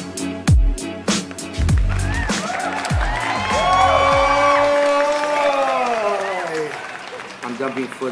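Intro music with a deep kick-drum beat for the first few seconds gives way to a long, drawn-out voiced sound that slides down in pitch near the end.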